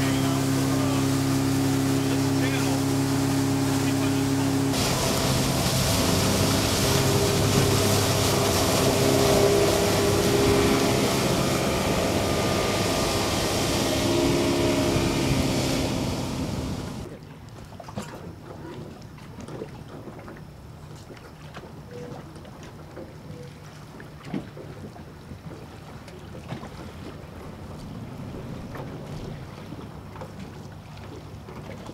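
Outboard motor of a small boat running at speed, with rushing wind and water. About five seconds in, the hiss of spray grows and the engine pitch shifts. A little past halfway it cuts off sharply to a quiet background with faint scattered clicks.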